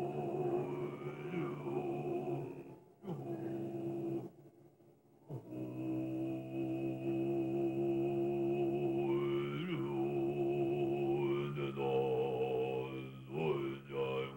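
A deep male voice in Tibetan Buddhist chant, holding long low notes with a bright ringing overtone above them. It breaks off for breath about three seconds in and again about four to five seconds in, and the pitch glides and steps up in the second half.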